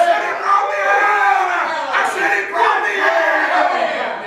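A preacher's loud, drawn-out hollering in a sing-song, with long bending tones and hardly a break, as other voices in the congregation call out.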